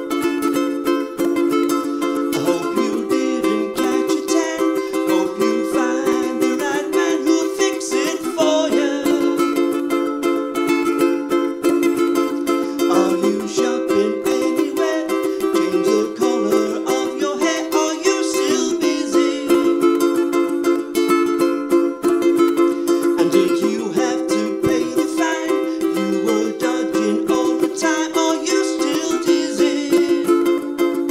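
Ukulele strummed in a steady, rhythmic chord pattern, alternating C and D minor chords.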